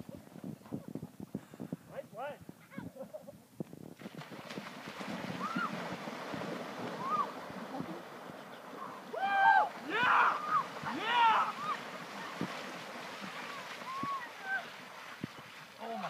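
Bare feet running on sand, then a steady wash of wind and splashing water with distant shouts and whoops from people plunging into cold lake water, loudest in a burst of yells near the middle.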